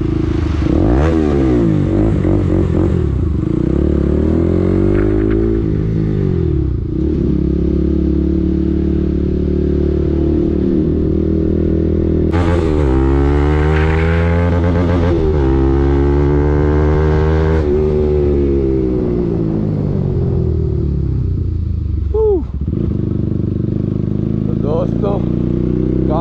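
Bajaj Pulsar 200NS single-cylinder engine running through an Akrapovic exhaust with its muffler removed, very loud. It revs up and falls back several times as the bike accelerates and shifts on the move, with a run of hard rising revs near the middle.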